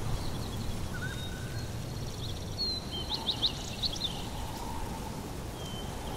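Outdoor ambience: small birds chirping, with a quick burst of several short high chirps about three to four seconds in, over a low steady rumble.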